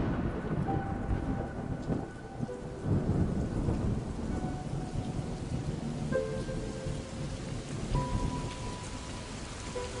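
Steady heavy rain falling, with low thunder rumbling through it. A few faint sustained music notes sound above the rain, more of them from about halfway on.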